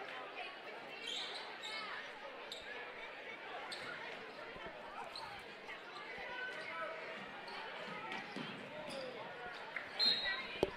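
Faint crowd chatter in a gymnasium during a basketball game, with a few scattered thuds of the basketball bouncing on the hardwood court.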